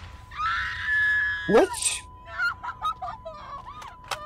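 A high scream lasting about a second, over a thin, steady high-pitched ringing tone that holds throughout. The tone is the ear-ringing effect used after a gunshot.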